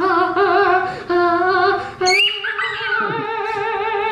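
A singing voice holding three long, wavering notes, with short breaks between them; the last note is the longest.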